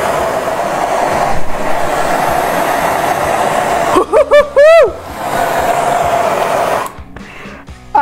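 Handheld gas torch burning with a loud, steady hiss. About four seconds in, a woman's short sung 'woo' with a gliding pitch cuts in; the hiss resumes, then stops abruptly near the end.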